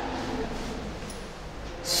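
Quiet room tone in a pause between spoken words: a faint steady hiss and low hum. Near the end a woman's voice comes back in with a hissing 's' sound.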